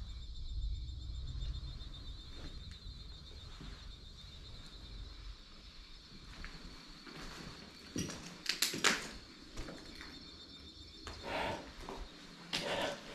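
Footsteps and camera handling as a person walks slowly over a floor, with a few sharper knocks about eight to nine seconds in and again near the end. A faint steady high-pitched tone runs underneath.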